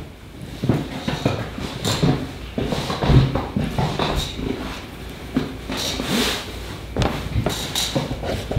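A person moving about in a chair at a wooden table: rustling, creaks and irregular knocks and thumps as cowboy boots are taken off the tabletop and set back up on it. The heaviest thump comes about three seconds in.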